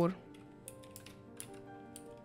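Computer keyboard keys tapped about five times, light separate clicks, with faint background music underneath.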